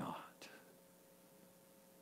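A man's spoken word trails off at the start, with a soft click just after it. Then near silence: room tone with a faint steady hum.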